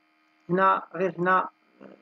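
Brief speech over a steady electrical mains hum: a voice says a few words about half a second in, and the hum carries on underneath throughout.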